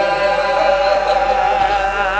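A man's voice chanting a melodic lament (masaib) into a microphone, amplified over a loudspeaker, with a wavering held note near the end.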